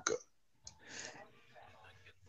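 A pause between speakers: the last syllable of speech dies away, then a faint click comes about two thirds of a second in, followed by a soft, brief hiss-like noise about a second in.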